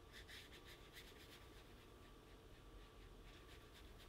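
Near silence, with faint scratches of a watercolour brush drawn across paper, a few light strokes close together in the first second and sparser ones after.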